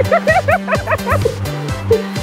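High-pitched laughter, a quick run of short 'ha' bursts about five a second, over background music with a steady beat.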